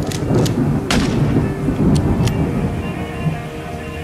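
Thunder rumbling with several sharp cracks, the loudest about a second in, while music with sustained tones fades in near the end.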